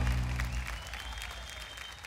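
Studio audience and musicians clapping over the end of a band's music; a held low note dies away in the first moment and the whole sound fades down steadily.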